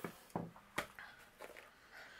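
A few light knocks and clicks, spaced irregularly through the two seconds, as small craft supplies are handled and set down on a tabletop.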